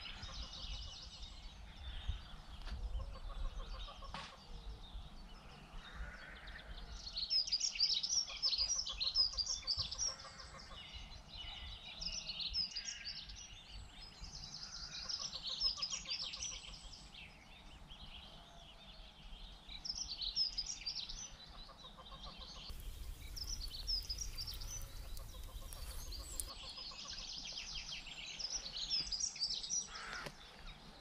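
Songbirds singing in repeated chirping, trilling phrases. Under them is a low rumble of wind on the microphone, which swells with a hissing gust about two-thirds of the way through.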